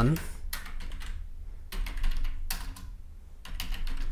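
Typing on a computer keyboard: runs of quick key clicks with a short pause about three seconds in.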